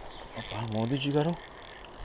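Spinning fishing reel ratcheting and whirring under load as a hooked fish is played on a bent rod. About half a second in, a man gives a drawn-out excited "ho" call lasting about a second, louder than the reel.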